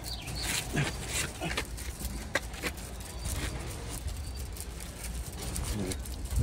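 Outdoor ambience: a steady low rumble with scattered faint clicks and rustles, and a few brief faint pitched sounds near the start.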